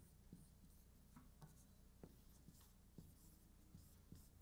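Faint dry-erase marker writing on a whiteboard: a scattered run of short strokes and small squeaks over quiet room tone.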